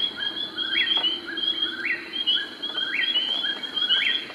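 Eastern whip-poor-will singing its namesake 'whip-poor-will' song, the phrase repeated about once a second, four times, over a steady high-pitched background.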